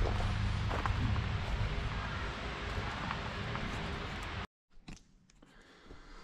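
Steady outdoor background noise with a low rumble. About four and a half seconds in it cuts off sharply to near silence, with a few faint clicks near the end.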